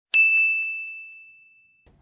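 A single bright ding: one clear bell-like chime that strikes just after the start and fades away over about a second and a half, set over dead silence like an added sound effect.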